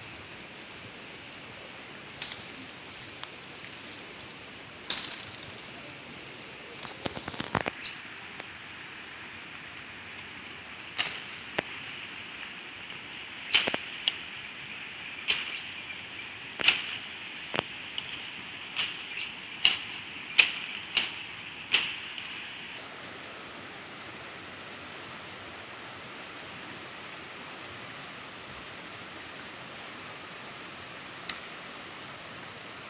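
Bamboo being cut: sharp cracks and knocks, a few scattered at first, then about one a second for some ten seconds in the middle. Under them runs a steady rushing hiss of a river swollen after heavy rain.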